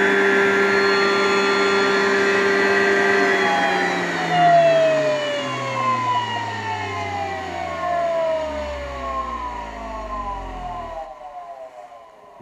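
Centrifugal juicer's motor running with a steady whine, then switched off about three and a half seconds in, its pitch falling steadily as the basket spins down over about seven seconds until it stops.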